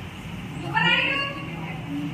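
A person cries out once, a brief high-pitched wail about a second in, over a steady low hum.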